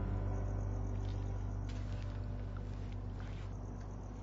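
A low, steady rumbling drone that slowly fades, with faint hissy rustles above it.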